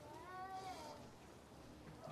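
One faint, high-pitched wailing cry, rising and then falling in pitch, lasting just under a second.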